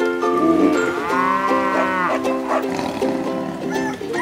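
A cow mooing once, one long call about a second in, over background music.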